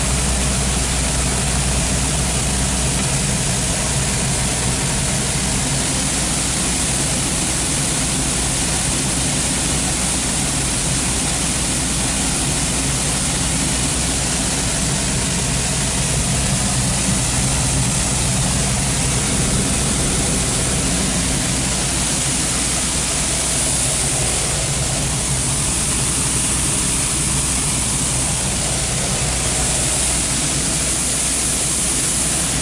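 John Deere 4400 combine running steadily at working speed, heard from the cab, with its unloading auger out over a trailer emptying the soybean tank: a constant drone with a low hum under a steady rushing noise.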